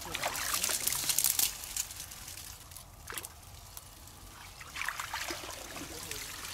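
Shallow ditch water splashing and trickling as hands rummage through floating water plants. It is busiest at first, eases off, then picks up again near the end.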